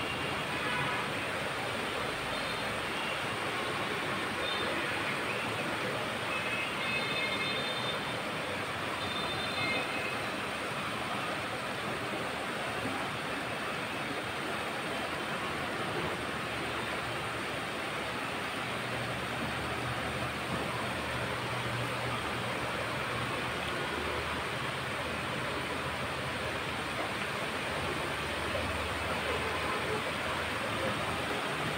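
Steady wind blowing ahead of a rainstorm, a constant rush of noise, with a few faint high chirps in the first ten seconds.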